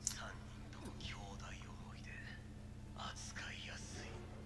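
Faint, thin-sounding spoken dialogue from an anime episode, played quietly, in two short stretches. A steady low hum runs underneath.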